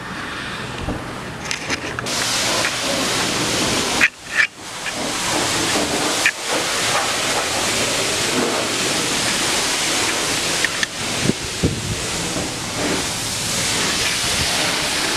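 High-pressure wash wand spraying water onto a pickup truck: a steady hiss that swells up about two seconds in, with two brief breaks about four and six seconds in.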